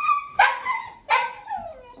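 Labradoodle puppies barking and yipping as they play-wrestle: a short high yelp, then two sharp play barks less than a second apart, each falling in pitch.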